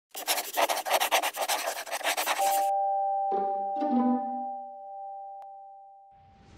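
Intro music sting: fast rhythmic hissing pulses, about five a second, stop abruptly after about two and a half seconds. Two held chime-like tones then ring out with two struck notes over them, fading away.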